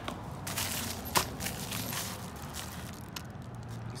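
Rustling and scuffing of plastic wrap and cardboard packaging being handled, with one sharp click about a second in.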